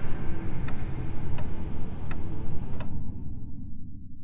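Sharp ticks about every 0.7 s over a dense low rumbling drone. The ticks stop just under three seconds in, and the drone fades out near the end.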